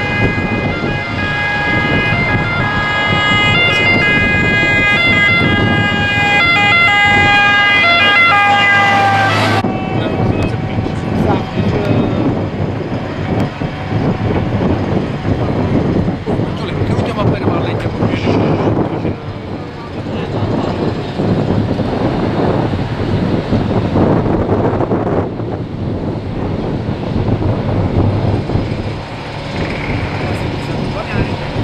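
An emergency vehicle's siren sounding a held tone with a few brief breaks for about ten seconds, then cutting off suddenly. Afterwards there is a noisy outdoor mix of traffic and voices.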